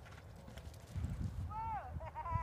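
Hoofbeats of a horse on dirt arena footing as it is brought down to a halt at the rider's "whoa". Near the end comes a high animal call that falls in pitch and then wavers.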